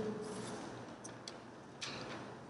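Sheets of paper being handled at a lectern: two faint ticks about a second in, then a sharper papery crackle near the end.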